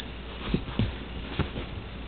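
An infant making three short grunts, about half a second, almost a second and a second and a half in.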